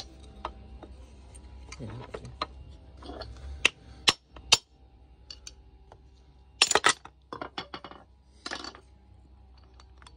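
Plastic handle of a screwdriver striking an aluminium motorcycle crankcase half to knock the cases apart. It gives irregular sharp knocks and metallic clinks: a few single strikes, then a quick cluster of them a little past the middle.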